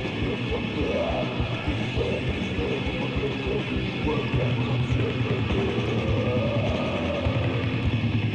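Death metal band playing a demo recording: heavily distorted guitars over rapid, dense drumming, with a wavering guitar or vocal line in the middle range.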